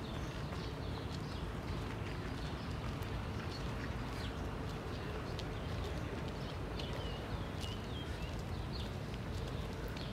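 Outdoor garden ambience: a steady low rumble with a few short bird chirps scattered through, and faint soft footfalls on grass.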